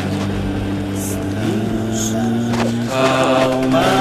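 Vocal music: several voices singing long held notes in harmony, the pitch stepping up a couple of times, with a new sung line beginning near the end.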